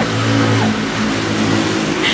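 A motor vehicle's engine running close by with a steady low hum whose pitch wavers slightly, over street hiss.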